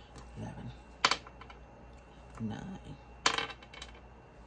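A 12-sided die rolled twice across a glass desktop, each roll a short rattle of quick clicks as it bounces and settles, the two about two seconds apart.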